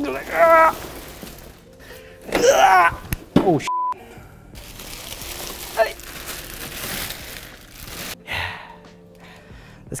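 Plastic wrap crinkling and rustling as it is pulled off a boxed electric go-kart, with a man's laughs and vocal sounds early on and a short steady beep about a third of the way in.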